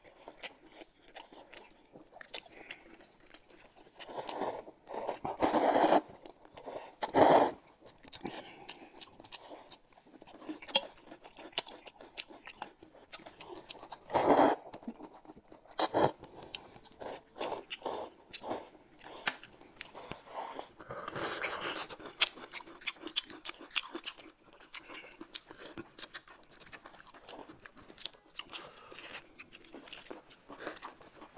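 Close-up eating sounds from two people: steady chewing with many small wet clicks and lip smacks, broken by several louder slurps of noodles and broth from metal bowls, the longest about four to six seconds in and others about seven, fourteen and twenty-one seconds in.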